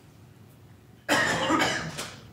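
A person coughing: a sudden loud burst about a second in, lasting just under a second, with a second push partway through.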